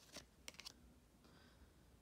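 Faint clicks and scrapes of glossy trading cards sliding against each other as a stack is flipped through by hand, a quick cluster of four clicks within the first second.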